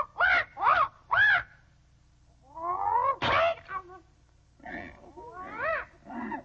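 Cartoon animal cries. Three short arching calls come in quick succession, then a rising call that breaks into a sharp crack about three seconds in, then more rising calls near the end.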